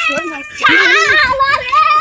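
Young boys' voices shouting and talking over each other, getting loud about half a second in and staying loud to the end.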